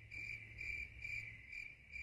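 Faint cricket chirping: a steady high-pitched pulsing trill, about three chirps a second.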